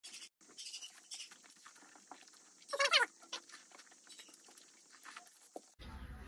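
Close-miked eating of fried eggs: small wet chewing clicks and lip smacks throughout. About halfway through comes one short, squeaky, pitched sound, the loudest moment.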